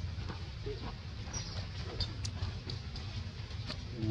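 Outdoor background: a steady low rumble with scattered faint clicks and ticks, and no clear monkey call.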